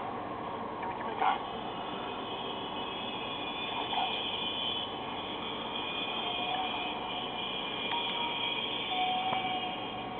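A film soundtrack playing faintly through the small built-in speaker of a Pioneer AVIC-S2 portable navigator: quiet and steady, with no clear voices and a couple of faint short tones near the end.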